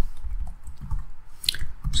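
A couple of soft computer keyboard keystrokes in the second half, over a low steady room rumble.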